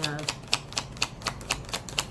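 A deck of tarot cards being shuffled by hand: a quick, even run of light card slaps, about seven or eight a second.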